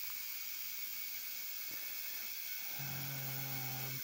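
Digital ultrasonic cleaner running with its water bath cavitating: a steady high hiss with a faint thin tone above it. A low held hum of a voice comes in near the end.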